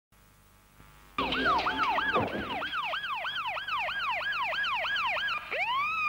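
Electronic police-style siren in fast yelp mode, about three quick up-and-down sweeps a second. It starts suddenly about a second in and changes to a slower rising wail near the end.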